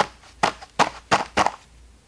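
A paper towel pressed and rubbed against a loose chainsaw chain on cardboard: about five short crinkling scrapes, roughly three a second, that stop about halfway through.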